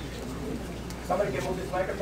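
Indistinct voices in a room over a steady low background hum, with a short pitched vocal sound in the second half.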